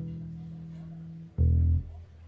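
Upright double bass plucked pizzicato: a held low note rings through the first second, then a louder, lower note is plucked about 1.4 s in and stopped short after about half a second.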